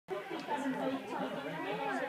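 Several people talking at once nearby, overlapping chatter with no single voice standing out.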